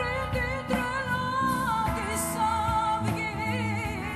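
A woman singing live with a band, accompanied by electric guitar, her voice held on long wavering notes.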